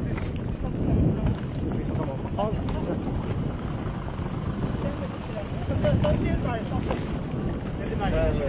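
Wind buffeting the camera microphone in a steady low rumble, with distant voices calling out a couple of times through it.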